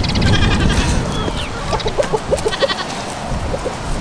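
Goats bleating: a wavering call near the start and a shorter one about halfway through.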